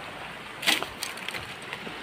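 Dry twigs and brush snapping and crackling in a string of sharp, irregular snaps, the loudest about two-thirds of a second in.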